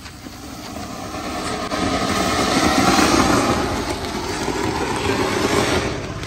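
Ground fountain firework spraying sparks with a steady, crackling hiss. It builds over the first couple of seconds, is loudest about halfway, and eases off slightly near the end.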